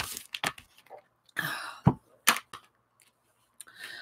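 A few sharp clicks and taps of a black plastic coffee-cup lid and other small craft items being handled on a tabletop, with a short rasping noise ending in a thud about one and a half seconds in.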